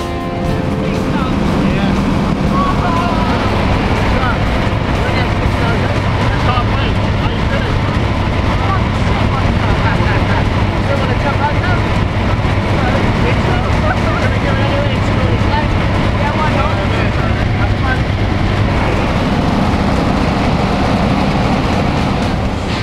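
Steady, loud engine and propeller drone of a skydiving plane, heard from inside the cabin during the climb, with indistinct voices under it.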